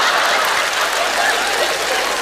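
A large studio audience laughing together in response to a joke; a dense crowd laugh that eases slightly toward the end.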